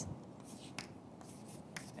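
Chalk writing on a chalkboard: faint scratching and tapping of several short strokes.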